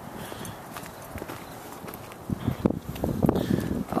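Footsteps walking on hard ground, starting a little past halfway and getting louder, after a quieter stretch of faint steady background noise.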